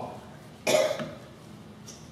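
A single cough, sudden and loud, about two-thirds of a second in.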